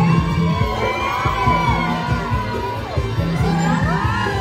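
Thai festival procession music with a steady drum beat and a long held high note, under a crowd cheering and calling out.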